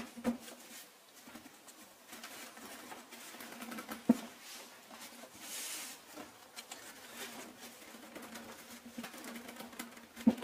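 Hands working a woven fabric-webbing chair seat: rustling and scraping of the webbing as it is pressed, tucked and pulled tight, with a sharp knock about four seconds in and a brief louder rustle a little later.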